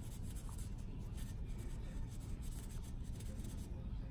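A series of short, faint scratching strokes of a scalpel blade paring away the thick callused skin of a corn on the little toe, over a low steady rumble.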